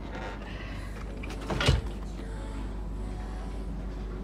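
Low, steady hum inside a stationary train carriage, with a single sharp thump just before the middle.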